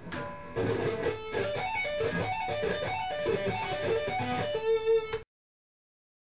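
Electric guitar playing a D major sweep-picked arpeggio fast, the notes running up and down the chord shape over and over and ending on a held note. The sound cuts off abruptly about five seconds in.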